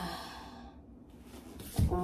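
A woman sighs once at the start, a short breathy voiced exhale that fades within half a second. After a pause she starts talking near the end.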